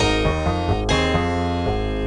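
A single sampled piano note played back from a software sampler, keyed at several pitches in turn, with about five notes striking in two seconds. Because one sample is transposed too far from its recorded pitch, it sounds like a toy piano: metallic and fake.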